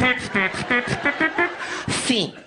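A man's voice through a microphone, rapidly singing short pitched syllables in a comic vocal imitation of a Mexican love song.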